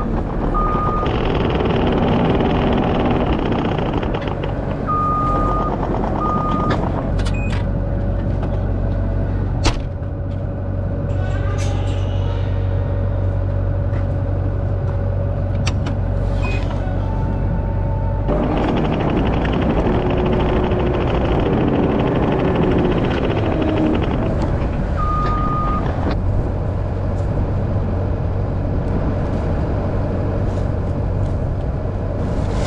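Farm tractor engine running steadily while moving a round hay bale, with two louder stretches, one at the start and one a little past the middle. Several short high beeps sound over it.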